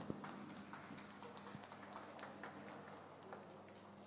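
Faint, scattered hand claps from a few people, irregular and thin, over a low steady hum.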